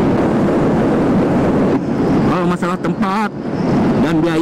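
Yamaha NMAX 155 scooter's single-cylinder engine running under way at about 90 km/h, with a steady rush of wind and road noise. A man's voice comes in about two seconds in.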